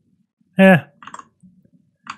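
A few light keystrokes on a computer keyboard, following a short spoken "eh".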